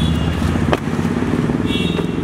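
A vehicle engine idling with a steady, fine-pulsed rumble, and one short sharp knock about three-quarters of a second in.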